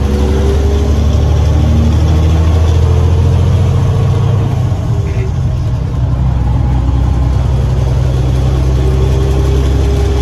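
Cab interior of a 1997 Freightliner FLD112 tractor cruising at highway speed. Its 400 hp Cummins M11 inline-six diesel and the road noise make a steady, loud low drone.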